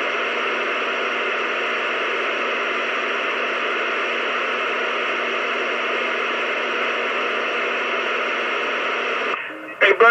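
CB radio receiver putting out a loud, steady rush of static from a station holding its transmitter keyed without talking. It cuts off abruptly about nine seconds in.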